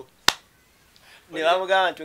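A single sharp snap about a quarter of a second in, from a hand, followed by near quiet; a man's voice starts in the second half.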